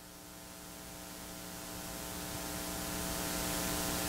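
Electrical mains hum with a hiss, growing steadily louder.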